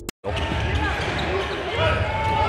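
Live basketball game sound in an arena: a ball dribbling on the hardwood court and players' shoes squeaking, over crowd noise. It starts after a brief gap of silence at the very beginning.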